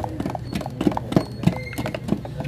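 Flat stirring sticks knocking and scraping against the walls of two metal gallon paint cans as thick epoxy enamel is stirred in both at once: an irregular run of knocks, about four a second.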